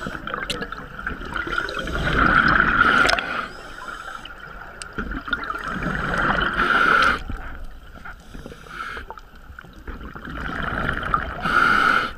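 Scuba diver breathing through a regulator underwater: three breaths, each a loud rush of air and gurgling bubbles lasting a second or two, about four seconds apart.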